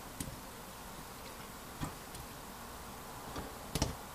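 A few faint clicks and taps from multimeter probe tips being moved between 18650 lithium cells, the loudest near the end, over quiet room tone.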